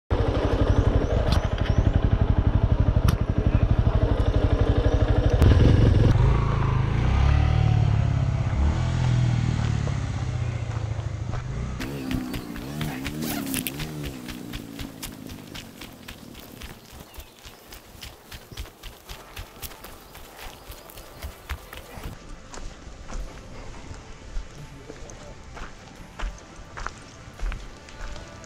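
Yamaha Ténéré 250's single-cylinder four-stroke engine running, heard from the rider's seat, loud at first and fading out over roughly the first twelve seconds. After that a much quieter stretch follows with scattered light clicks.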